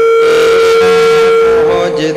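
Devotional bhajan music: one long note held at a steady pitch, then a voice starting to sing with sliding pitch near the end.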